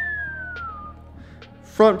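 A person whistling one long note that slides slowly down in pitch and stops about a second in, over faint background music.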